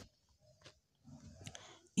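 Quiet pause holding only faint room noise, with a brief soft click about two-thirds of a second in and a faint low rustle in the second half.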